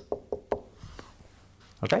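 A marker tip tapping and clicking on a whiteboard as the last letters and an exclamation mark are written, four short clicks in the first second, then quiet.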